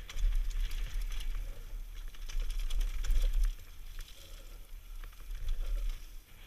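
Wind buffeting a helmet-mounted camera's microphone during a fast mountain-bike descent, with the tyres rolling over loose dry dirt and the bike rattling in many small clicks. The rumble eases off about halfway through and builds again near the end.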